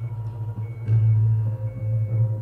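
Sci-fi TV episode soundtrack: music with a low, steady drone and a few faint, thin high tones held for a moment.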